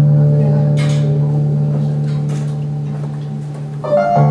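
Instrumental introduction to the song: a sustained chord held and slowly fading, with a new chord coming in near the end.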